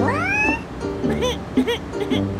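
A cat meow sound effect, one rising cry in the first half second, laid over background music with short chirping notes.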